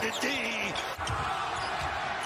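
Basketball being dribbled on a hardwood court: a run of low bounces about two or three a second, starting about halfway through.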